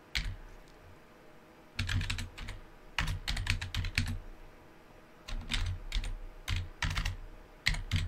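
Computer keyboard typing in short bursts of keystrokes, with pauses of about a second between the bursts.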